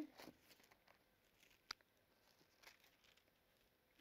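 Near silence, with faint rustles of thin Bible pages being turned by hand and a single short click about halfway through.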